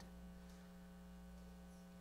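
Near silence with a steady, faint electrical mains hum and its evenly spaced overtones.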